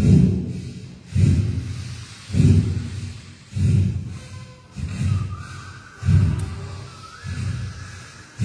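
Forceful rhythmic exhalations of a pranayama breathing exercise, close to the microphone: about seven sharp puffs of breath, one every second or so, each hitting the microphone and then fading.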